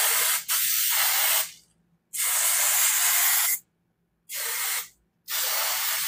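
Aerosol self-tanning spray hissing in a run of short bursts, each half a second to a second and a half long, with brief gaps between them; the fourth burst is shorter and quieter.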